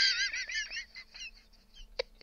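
High-pitched, squeaky laughter that tails off into short, fading bursts.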